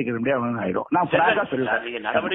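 Speech only: a person talking, with a brief pause a little before one second.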